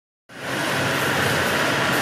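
Steady din of an indoor competition pool during a race: swimmers splashing, the noise washing around the echoing hall. It starts abruptly about a quarter second in.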